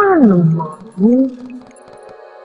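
A woman's wordless groan, loud, sliding steeply down in pitch for over half a second, then a second shorter groan about a second in, over soft background music.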